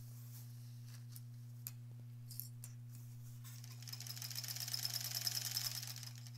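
Sewing machine stitching through pieced quilt fabric: it starts about halfway through and grows louder, a rapid, even run of stitches over a steady low hum. A few light clicks come before it starts.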